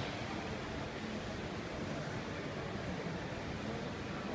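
Steady background noise of a large indoor shopping mall: an even hum and hiss with no distinct events.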